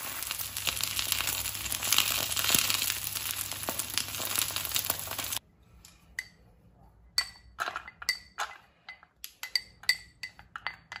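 Egg frying in oil in a nonstick pan, a steady sizzle with small crackles, which cuts off suddenly about five seconds in. Then a run of light, ringing clinks and taps on a thin aluminium pot and a ceramic bowl, as chopsticks scrape minced garlic into the pot.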